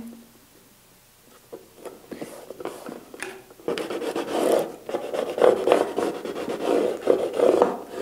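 Plastic scraper tool rubbed firmly back and forth over transfer tape, burnishing a glitter adhesive vinyl decal onto a wooden board. After a few light taps and rustles, steady scraping strokes start about four seconds in, about two a second.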